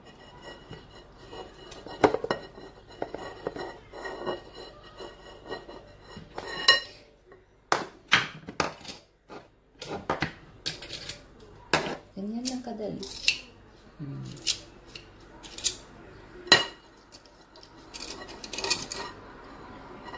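Metal garlic press being squeezed, opened and knocked about over a bowl, giving a run of sharp metallic clicks and clinks at irregular intervals.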